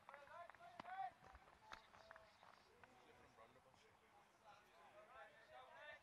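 Near silence, with faint distant voices calling out now and then and a few light clicks.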